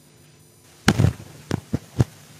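A few sharp pops: the loudest comes just under a second in, and two or three smaller ones follow over the next second.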